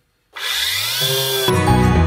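Electric random orbital sander starting up on bare sheet steel, its motor rising in pitch as it spins up. About a second and a half in, background music comes in over it.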